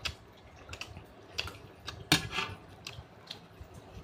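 Close-miked eating sounds: scattered lip smacks and mouth clicks as a man chews chicken rendang and rice eaten by hand, with one louder smack about two seconds in.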